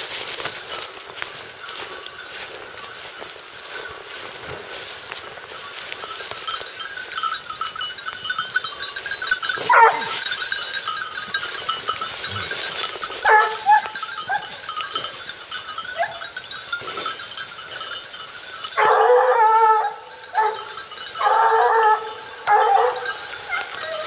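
Pack of Porcelaine hounds giving tongue on the scent of a hare: a single call about 10 seconds in, a few more around 13 seconds, then a run of loud baying bursts from about 19 seconds on. Bells on the hounds ring lightly throughout.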